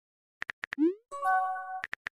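Texting-app sound effects: a run of quick keyboard typing clicks, then a short rising 'bloop' as a message pops in, followed by a brief chime of several steady tones lasting under a second.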